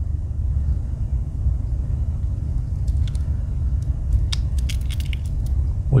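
Steady low background rumble, with a few faint small clicks in the second half from the metal tools of a Wenger Swiss Army knife being folded and handled.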